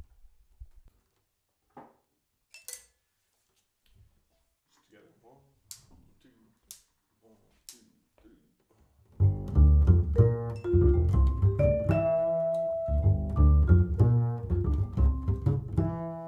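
After about nine seconds of near quiet broken by a few faint clicks, a plucked upright double bass and a vibraphone start playing a jazz duo arrangement together, the vibraphone's ringing notes sustaining over the bass line.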